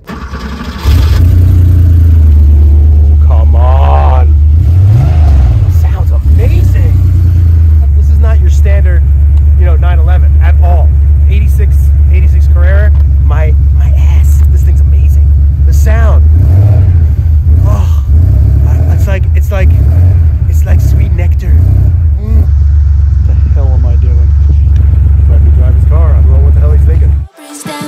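1986 Porsche 911 Carrera's air-cooled 3.2-litre flat-six running under way, a loud low drone that starts about a second in, with a couple of rises and falls in pitch as it is driven. Indistinct voices come through over it now and then.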